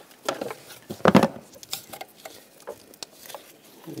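Small plastic clicks and scrapes as a trim tool pries a wiring-harness retainer out of its mount in the engine bay, with a louder clack about a second in.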